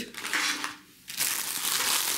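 Clear cellophane packaging around a bag of artificial poinsettias crinkling as it is handled: a short rustle, a brief pause about a second in, then steady crinkling.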